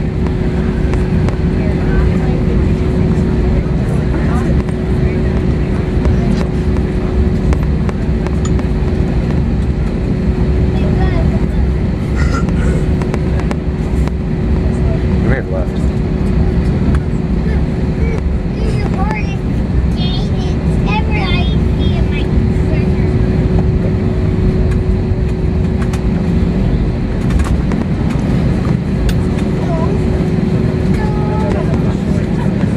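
Cabin noise of an Airbus A321-231 taxiing, its IAE V2500 engines at low power: a steady rumble with one constant droning note running through it. Faint voices come and go in the middle.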